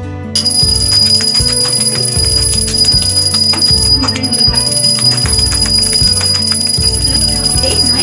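Pooja hand bell rung continuously, starting just after the beginning: a steady high ringing with rapid strikes of the clapper, heard over background music.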